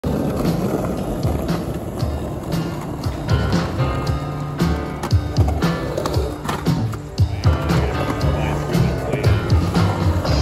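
Skateboard wheels rolling over rough asphalt with a steady low rumble, under music with a regular beat.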